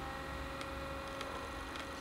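Nissamaran Ecomotor Pro 50 lb-thrust 12 V electric trolling motor running at its first speed out of water: a faint, steady hum with a few high tones.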